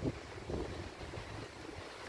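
Low, faint rumble of wind buffeting the microphone.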